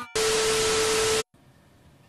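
A burst of static-like white-noise hiss with a steady mid-pitched tone through it, lasting about a second and starting and stopping abruptly: an edited-in transition sound effect at a cut in the video.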